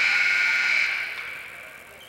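Gym scoreboard buzzer sounding, a steady electric tone that starts abruptly, holds for about a second and then fades away over the next second.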